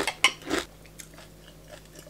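A mouthful of cornflakes being chewed, with a few sharp crunches in the first second and fainter ones after.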